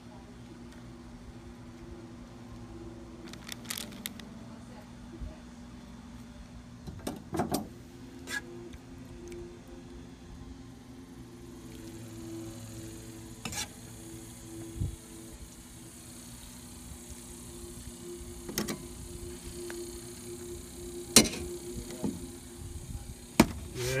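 Metal kitchen tongs clicking and tapping against a ceramic plate while shredded beef is served onto bread: several separate sharp clicks, the loudest two near the end. Under them runs a steady low hum.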